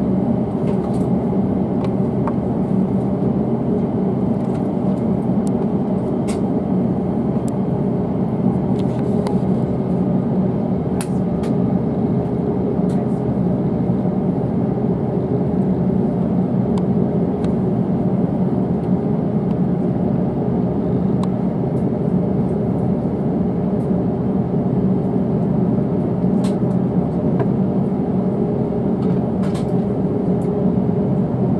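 Steady low hum and hiss with a few faint clicks: the air-conditioning and machinery drone inside a parked Airbus A350-900 airliner cabin at the gate.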